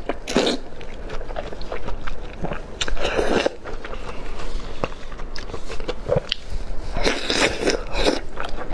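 Close-miked eating sounds: biting soft dumplings in chili-oil sauce off bamboo skewers and chewing them. Three louder bites stand out, near the start, about three seconds in and about seven seconds in, with small mouth clicks and chewing between.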